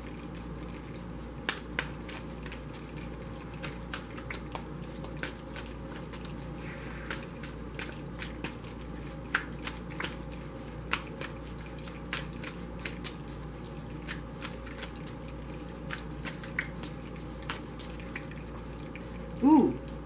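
A tarot deck being shuffled by hand, giving irregular soft clicks and flicks of cards against one another over a steady faint background. A woman's voice starts just before the end.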